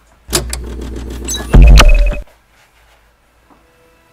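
The opening of a played diss-track video: a loud, bass-heavy sound effect lasting about two seconds, loudest just before it cuts off. Faint instrumental notes start near the end.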